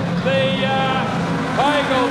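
A pack of production sedan race cars' engines revving together: several overlapping engine notes rising and falling in pitch over a steady low rumble as the field races into a corner on a dirt speedway.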